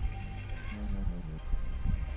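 Background music with a steady low bass and short held notes changing in pitch.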